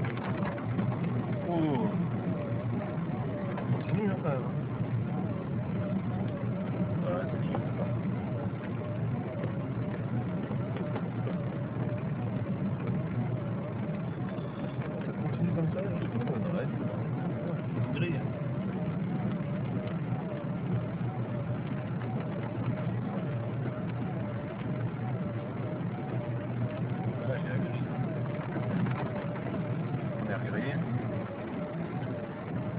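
Steady engine and road rumble inside a car driving at night, with a faint wavering tone running under it throughout.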